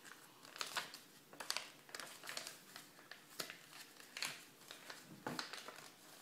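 A sheet of paper being folded and creased by hand, with a run of irregular short rustles and crinkles.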